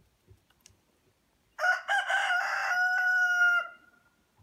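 A rooster crowing once, a call of about two seconds that begins a second and a half in, rough at first and ending on a long held note.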